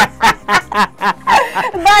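A man laughing out loud in short, quick bursts, about four a second, with talk starting up again in the last half-second.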